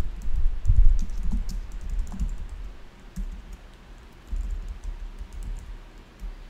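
Typing on a computer keyboard: irregular clicks over dull low thumps. It is busiest in the first two seconds, eases off, then picks up again around four to five seconds in.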